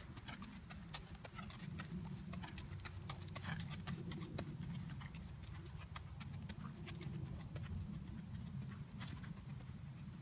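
A horse's hooves striking a gravel ring surface as it trots, a quick run of uneven hoofbeats over a low steady rumble.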